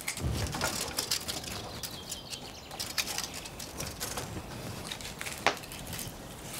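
Wood being handled inside a brick wood-fired oven as it is readied for a fire: scattered light knocks, scrapes and crackles of sticks and timber, with one sharper knock near the end.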